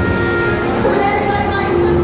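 Subway train running in the station: a steady low rumble with a held, even tone, and brief voices over it.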